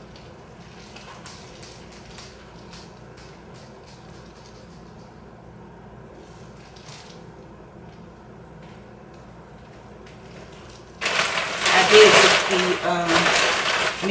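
Faint rustling and light knocks as a dry fiddle-leaf fig is worked out of its pot by hand. About eleven seconds in, much louder talking cuts in abruptly.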